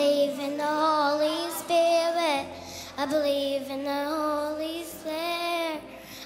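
A young girl sings a song into a handheld microphone over a musical accompaniment of long, low held notes. Her sung phrases last one to two seconds, with wavering held notes.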